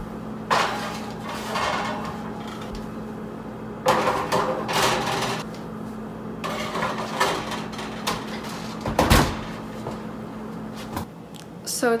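Metal baking trays scraping and clattering as they are slid onto oven racks, then a single loud thud about nine seconds in, typical of the oven door being shut. A steady low hum runs underneath and stops near the end.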